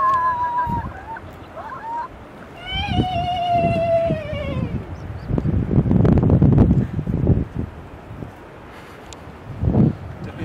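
A person's drawn-out vocal calls: one held call trailing off about a second in, then a longer one a couple of seconds later that slides slowly down in pitch. Low rumbling noise follows for a few seconds.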